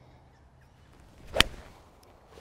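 A golf shot: the short swish of a Mizuno MP20 MMC four iron on the downswing, then one sharp strike of the forged, copper-underlaid clubface on the ball about one and a half seconds in.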